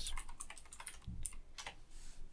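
Typing on a computer keyboard: a quick, uneven run of key clicks as a short word is typed, with one duller thump about a second in.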